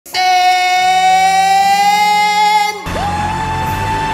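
A male singer holding one long note with a band behind him, then a sudden cut a little before three seconds to another male singer holding a long high note.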